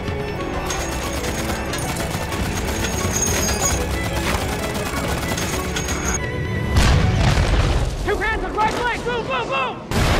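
War-film battle audio under music: gunfire and explosions, with a heavy low blast about seven seconds in and a run of quick rising-and-falling tones near the end.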